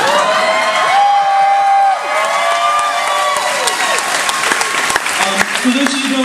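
Large audience cheering with long drawn-out whoops, turning into clapping from about halfway through.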